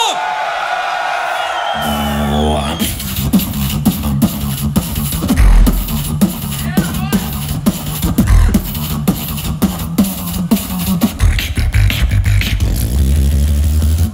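Solo beatboxing into a handheld microphone, amplified through a PA. It opens with a sliding, falling vocal tone. From about two seconds in comes a steady rhythmic pattern of deep bass notes under sharp kick, snare and click sounds.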